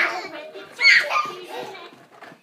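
Toddler's high-pitched wordless shouts and squeals during play: one right at the start and a louder one about a second in.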